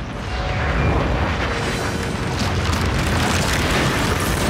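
Cartoon sound effect of a tunneling machine boring through earth: a loud, continuous rumble with crackling, swelling just after the start.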